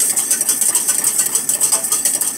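A metal spoon stirring a drink in a stainless steel mug, clinking rapidly and steadily against the mug's sides, many clinks a second.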